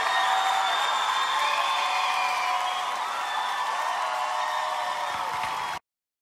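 Concert audience cheering and applauding at the end of a live song recording, with shouts and whoops over the clapping, fading a little before cutting off abruptly near the end.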